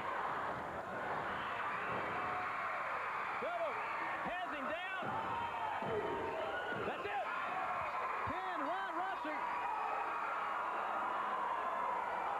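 Arena crowd cheering and screaming at a wrestling match, a steady roar of many voices. Through the middle of it come many short, shrill rising-and-falling shrieks from fans.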